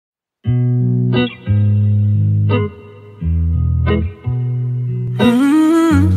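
The opening of a recorded pop song. After half a second of silence, sustained instrumental chords change about every second and a bit, and a single voice humming "mmm" with a sliding pitch comes in about five seconds in.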